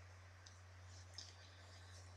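Near silence: room tone with a steady low hum and a couple of faint clicks, about half a second in and again just after a second.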